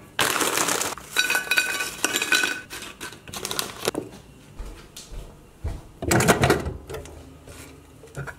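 Crinkly snack packet rustling and crisps being tipped and handled on a ceramic plate, with a sharp knock of the plate on the table a little after halfway through.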